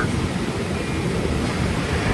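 Steady low rumbling noise with a faint hiss over it.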